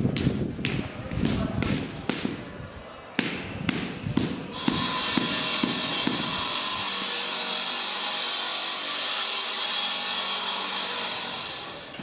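Construction-site noise: a quick run of knocks, about three a second, over a rough low din. From about five seconds in it gives way to a steady, high-pitched grinding hiss like a power tool working stone, which fades just before the end.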